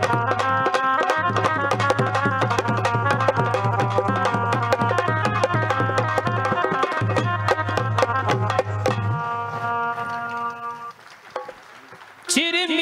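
Live Rajasthani folk music: fast hand-drum strokes over held keyboard notes. The drumming stops about nine seconds in, and the held notes die away a couple of seconds later, leaving a short lull.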